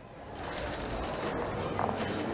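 Outdoor ambience fading in from near silence to a steady background hum of people gathering at a building entrance, with a few faint short calls in it.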